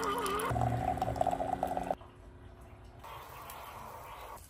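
Liquid being poured into a container for about a second and a half, then fading to faint kitchen noise about two seconds in.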